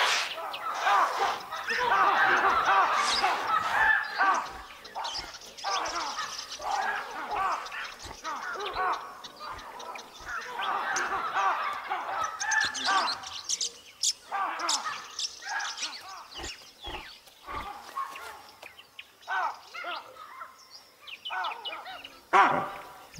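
A baboon troop giving alarm calls at a leopard: bursts of many overlapping calls, loudest in the first few seconds, with lulls between and sparser calling near the end.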